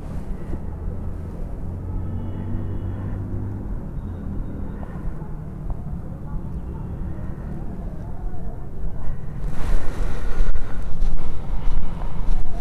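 Open-air ambience with a steady low rumble of distant traffic, a faint engine hum in the first few seconds. Wind buffeting the microphone grows louder and uneven for the last couple of seconds.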